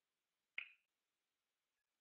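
Near silence, broken about half a second in by a single short, sharp click that dies away within a few tenths of a second.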